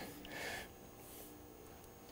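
A short, faint breath out through the nose, about half a second in, from a man bent over a barbell, then quiet room tone.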